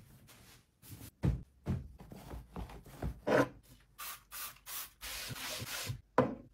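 Hands rubbing and smoothing fabric bedding, a series of short separate strokes, with quicker brushing and then a steadier hiss in the last second.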